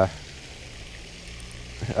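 Steady splashing hiss of a pond's spray fountain, with a man's voice briefly at the start and again near the end.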